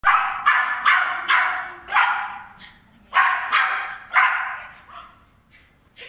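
Small dog barking repeatedly in quick sharp barks, about five in the first two seconds and three more about a second later, echoing in a large hall.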